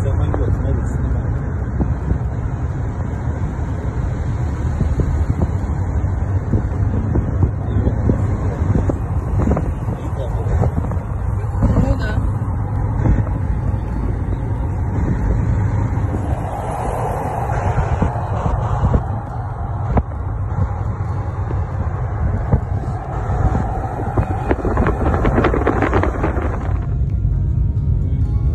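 Steady low rumble of road and wind noise inside a moving car, with indistinct voices at times.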